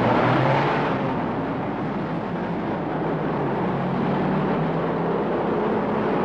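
Engine and road noise of a minivan driving steadily along a road.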